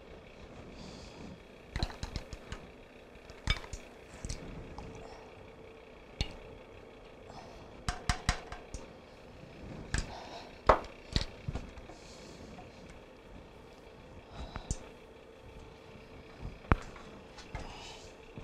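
Irregular light clinks, taps and scrapes of a plastic spoon against a glass jar and a skillet as honey is scraped out and stirred into the sauce.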